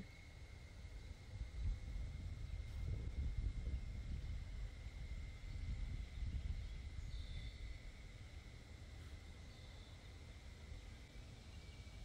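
Outdoor ambience: a low, uneven rumble of wind on the microphone, with a thin steady high tone underneath and a couple of faint short high chirps a little past the middle.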